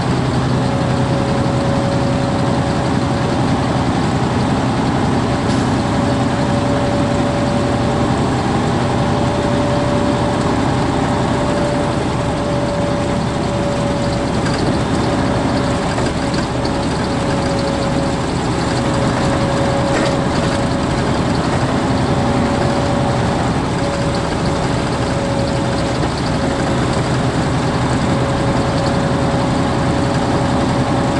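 Semi-truck engine and road noise heard inside the cab while cruising at steady speed: a continuous drone with a steady hum.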